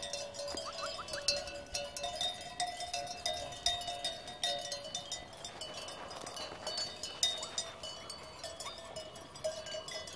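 Many small bells worn by a crowded flock of sheep and goats clanking and tinkling continuously as the animals jostle in the pen. A drawn-out lower tone sounds under the bells through the first half.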